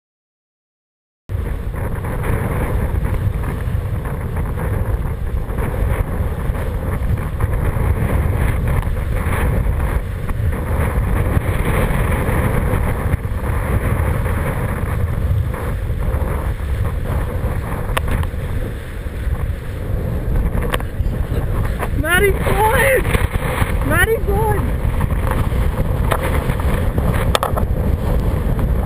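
Wind rushing over the microphone and water hissing and slapping as a kiteboard planes across choppy water, starting abruptly about a second in. Late on, a voice calls out briefly with rising and falling pitch.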